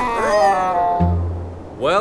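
High cartoon voices squealing and laughing while sliding down an ice slope, trailing off downward in the first half-second, over background music. About halfway through, the music holds one low note.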